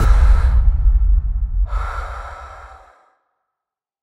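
A deep low boom in the soundtrack that fades out about three seconds in, with a short breathy whoosh near the two-second mark.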